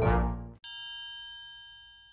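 A short intro music sting ends in the first half-second, then a single bright bell-like chime strikes and rings on, fading slowly.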